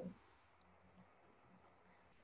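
Near silence on a video-call line, with a faint low hum and a couple of faint clicks.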